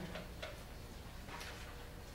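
Quiet room hum with two soft ticks about a second apart.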